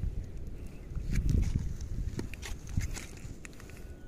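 Footsteps on wet sand and shallow water, a run of soft, irregular steps, over a low rumble on the phone's microphone.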